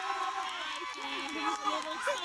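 Crowd chatter: many overlapping, indistinct voices of an audience in the stands.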